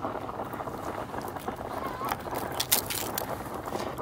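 Fillet knife cutting through a small kokanee just behind the head, with a few faint crunching clicks about three seconds in, over steady background noise.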